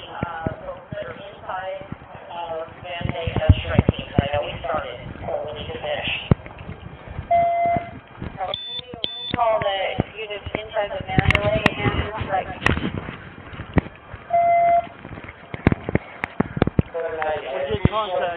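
Muffled voices talking through most of the stretch, with two short steady electronic beeps about seven and fourteen seconds in, and scattered sharp clicks and knocks.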